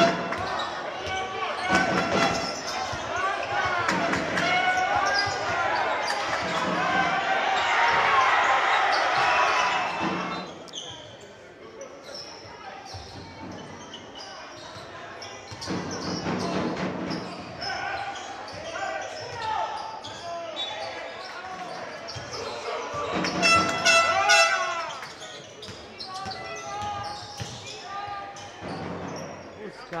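Live basketball court sound: the ball bouncing on the hardwood floor, with players' voices echoing in a large sports hall. It is busiest near the start and again about three-quarters of the way through, and quieter for a few seconds in the middle.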